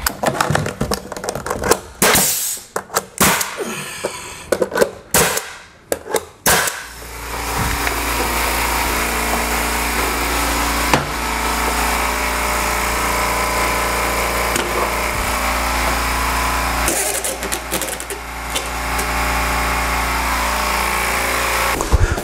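Ridgid 15-gauge pneumatic finish nailer firing a quick string of shots into crown molding over the first several seconds. Then the California Air Tools air compressor runs steadily, refilling its tank, with a brief dip about seventeen seconds in.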